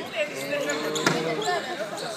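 Voices calling out in a sports hall, with one sharp knock of a futsal ball played on the wooden floor about a second in.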